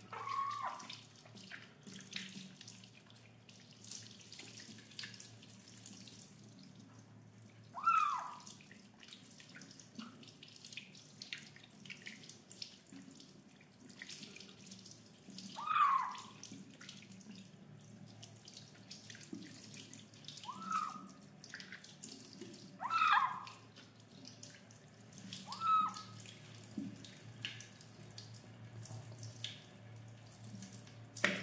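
Tap water running into a sink and splashing over a wet kitten being washed by hand. The kitten meows about six times, short cries that fall in pitch, spaced several seconds apart and louder than the water.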